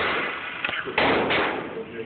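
Pistol shots echoing in an indoor shooting range. The first rings on from just before the start, then two more come close together about a second in, each with a long reverberant tail.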